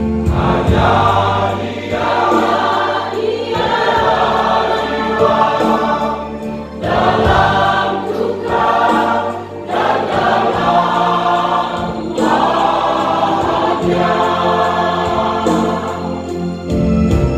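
Church choir singing in harmony, in sung phrases a few seconds long with brief breaks between them.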